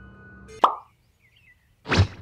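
Cartoon comedy sound effect: a short, sharp pop about half a second in, then a second sudden burst near the end.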